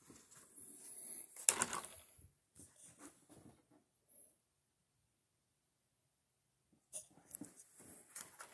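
Mostly quiet: a few faint handling rustles and clicks around one short spoken word, then a stretch of dead silence in the middle.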